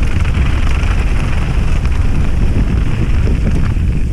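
Wind buffeting an action camera's microphone on a mountain bike descending fast, mixed with the steady noise of the tyres rolling over loose gravel and stones.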